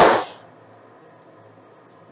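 A brief breathy whoosh of noise at the very start, then faint steady room tone.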